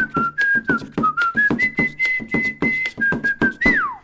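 Theme-song music: a whistled melody in stepping notes over a steady percussive beat of about four to five strokes a second, ending with a whistle that slides downward near the end.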